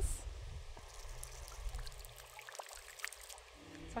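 Faint trickling and dribbling of water with a few small clicks: river water being pushed by syringe through an eDNA filter cartridge.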